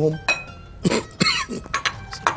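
A few light clinks of a spoon against a glass mixing bowl as cream is spooned in, with a short cough about a second in.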